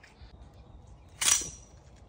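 Six-foot snake pole (snake tongs) clicking once, sharp and metallic, about a second in, with a brief high ring: its jaws worked by the trigger grip.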